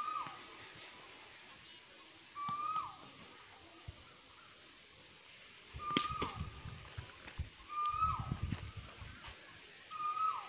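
A bird repeats a short call about every two seconds, a flat note that falls away at its end. About six seconds in, a single sharp crack of a cricket bat striking the ball.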